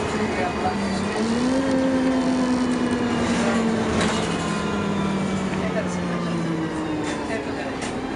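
Subway train running, heard from inside the car: a steady motor hum over rumbling noise, its pitch rising about a second in and slowly falling in the second half.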